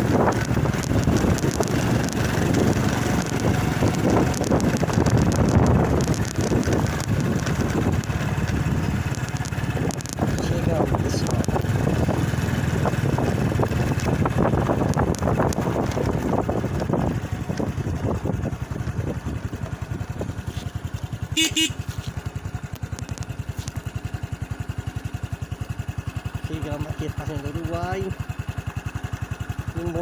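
Small motorcycle engine running while riding over a dirt track, with wind on the microphone. In the second half it settles to a lower, even putter, with one sharp knock about two-thirds of the way through.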